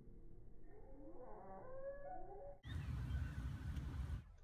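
Several short animal calls gliding up and down in pitch, then about two and a half seconds in an abrupt switch to a loud, low rumbling noise.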